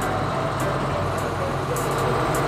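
Large tracked hydraulic excavator's diesel engine running steadily, with no revving.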